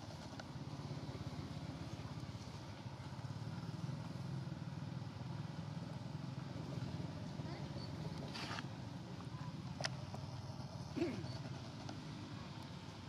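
A motor engine running steadily, a low rumble. A few faint clicks come in the second half, and a short squeak, the loudest sound, comes about eleven seconds in.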